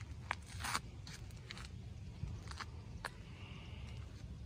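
A few short rustles and clicks over a low steady rumble, the loudest cluster a little under a second in: handling noise from a handheld camera moving close among rose bushes.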